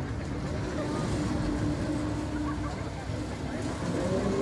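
A large swinging pendulum ride running: a steady low rumble with a constant mechanical hum from its drive as the rotating gondola swings through.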